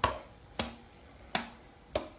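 A person's fingers snapping: four sharp snaps, about two-thirds of a second apart, each with a short ring.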